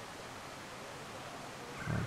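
Steady outdoor background noise: an even hiss with no distinct events, between stretches of commentary.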